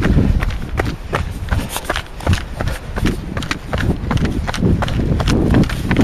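Running footsteps on a dirt forest trail, a quick, even stride of about three steps a second, close to the microphone of a camera carried by the runner.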